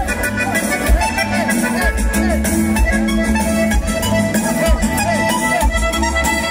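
Live norteño dance music played loud: an accordion repeating a quick rising-and-falling run over steady bass notes and a regular drum beat.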